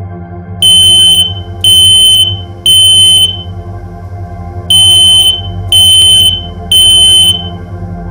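Ceiling smoke alarm going off, set off by smoke: loud high-pitched beeps in the three-beep evacuation pattern, three beeps about a second apart, a pause, then three more.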